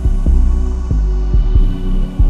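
Intro music built on deep, sustained bass notes with a kick drum hitting every half second or so; no vocals.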